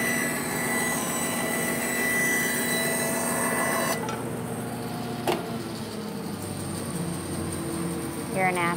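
Bandsaw running and cutting along a walnut board, a steady hissing whine that stops abruptly about four seconds in as the blade clears the wood. The saw keeps running more quietly after that, with a single sharp knock about a second later.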